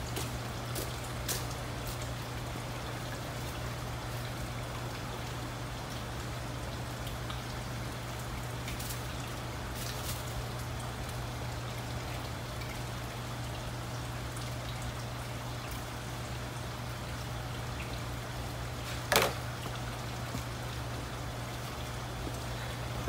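Steady trickle of running water over a low, steady hum, with a few faint clicks and one louder knock near the end as small packets and a cardboard box are handled.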